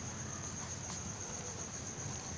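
A steady, unbroken high-pitched whine held at one pitch, faint, over a low background hum.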